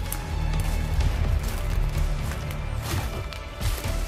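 Background music with a steady low bass line, with scattered crackles and snaps of dry leaves and twigs underfoot as someone pushes through brush.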